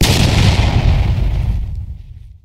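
A single shotgun shot, sudden and loud, with a long tail that dies away over about two seconds.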